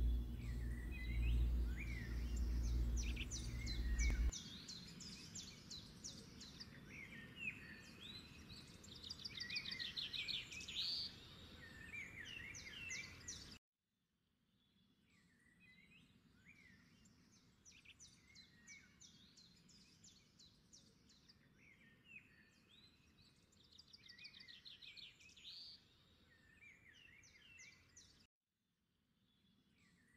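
Birds chirping and trilling in a faint background of birdsong, with a low hum under the first four seconds. The chirping stops abruptly about halfway through, then the same pattern of calls comes back much more quietly.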